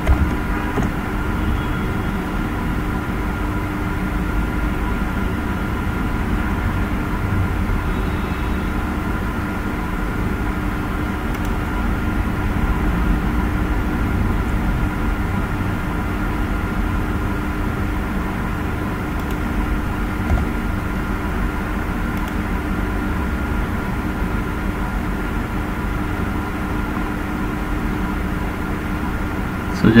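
Steady low hum and hiss with a few faint constant whining tones running evenly throughout, the background noise of a home recording setup.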